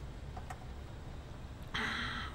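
Low steady background hum, with a faint click about half a second in and a short breathy hiss near the end.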